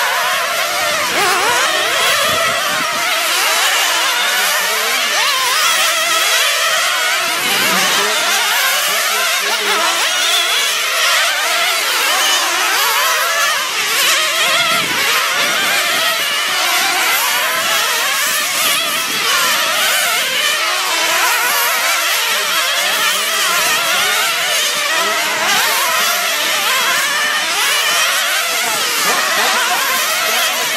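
Several radio-controlled nitro sprint cars' small two-stroke glow engines racing together, their overlapping high-pitched whines rising and falling as they rev up and back off around the oval.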